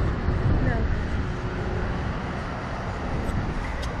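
Steady wind noise buffeting the onboard camera's microphone as the swinging ride capsule moves through the air, deepest in the low end, with a faint voice near the start.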